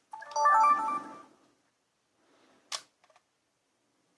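Sony HDR-CX450 Handycam's power-on chime: a short melody of stepped electronic tones lasting about a second as the camcorder starts up. A single sharp click follows a little past halfway.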